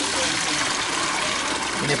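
Water draining out of a shallow metal basin through its freshly unplugged drain hole, a steady rushing gurgle.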